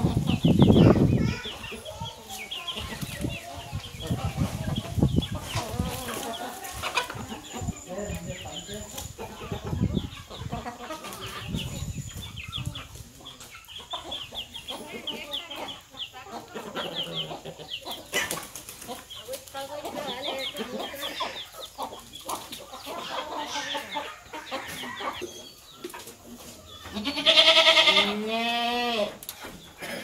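A flock of chickens, hens, roosters and young birds, clucking and calling in many short scattered calls, with one loud, long call near the end.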